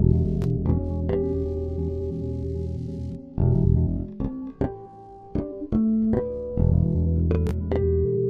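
Four-string electric bass playing a riff of plucked notes over held low notes. Midway the low notes drop out for about two seconds, leaving single higher plucked notes, then they return.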